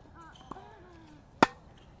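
Tennis ball struck by a racquet close by: one sharp crack about one and a half seconds in, the loudest sound here. About a second earlier comes a much fainter racquet hit from across the court.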